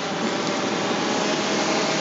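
Steady rushing of the flooded river, an even unbroken hiss of moving water, with a faint steady hum underneath.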